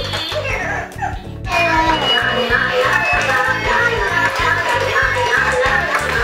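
Music with a steady beat from battery-powered dancing toys, a Dancing Laa Laa Teletubby plush and a Dancing Stuart Minion. It dips about a second in and starts again about half a second later.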